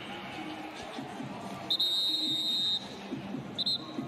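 Referee's whistle blown to end the play: one long blast of about a second, then a short second blast, over steady stadium crowd noise.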